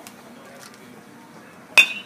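A metal baseball bat hits a pitched ball once near the end: a single sharp ping with a brief metallic ring, over a faint background of the field.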